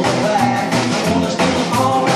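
Live rock and roll band playing: upright double bass walking a bass line under acoustic guitar and a drum kit, with a steady beat.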